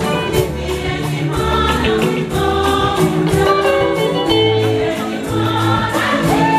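A church choir singing an upbeat gospel number with a live band, over a steady drumbeat and bass line.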